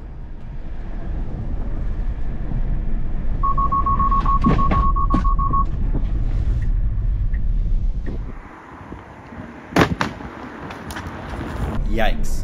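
Road and tyre rumble inside a Tesla's cabin, with a rapid run of high, even beeps for about two seconds a few seconds in: the car's driver-attention warning chime. The rumble drops away later, and a couple of sharp knocks follow near the end.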